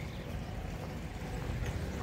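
Walking noise outdoors: a low, steady rumble with footsteps on cobbled paving.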